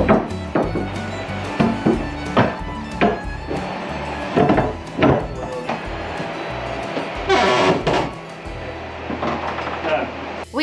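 Background music playing over a series of irregular wooden knocks and bumps as a wooden companionway staircase is handled and set back into place over the floor hatch.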